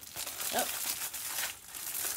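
Crinkling and crackling of a tote bag's clear plastic wrapper as it is pulled from the box and handled, irregular and continuous, with a short spoken "oh" about half a second in.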